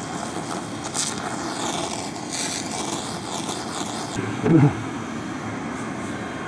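SFX BLC-2000 handheld fiber laser cleaner at low power stripping spray paint from wood: a steady machine drone with a higher hiss from the beam on the paint, which stops about four seconds in.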